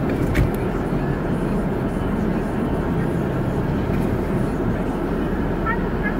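Steady running noise of a car heard from inside the cabin, with a single short click less than half a second in.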